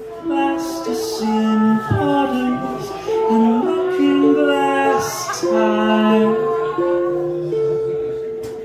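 A live solo song on acoustic guitar and voice: a melody of held notes, each about half a second to a second, stepping up and down over the guitar. The last note is held long and fades near the end.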